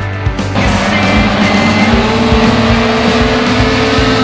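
Racing car engines running hard as two touring cars pass close together, heard under loud background music with a steady beat.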